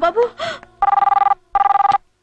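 Desk telephone ringing: two short rings of a two-tone electronic ringer, each about half a second long with a brief gap between them, starting about a second in.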